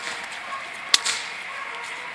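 A single sharp crack about a second in, from the training decoy's stick or whip snapped in the air to work up a young German Shepherd during bite training.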